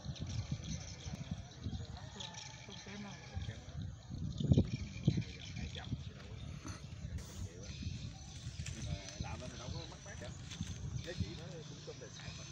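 Indistinct talking under a steady low rumbling noise that surges irregularly, loudest about four and a half seconds in.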